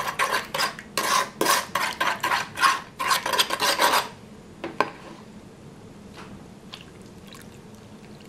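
Metal spoon stirring milk and sugar briskly in a plastic bowl to dissolve the sugar, scraping and clinking against the sides in rapid strokes, about three a second. After about four seconds the stirring stops, leaving a few faint taps.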